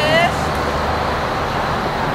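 A short, high call from the dog's handler at the very start, rising then holding its pitch, followed by a steady low hum of distant road traffic.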